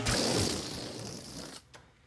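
Crinkling, rubbing noise of a rubber balloon pushed against a foam boat. It starts sharply and fades away over about a second and a half.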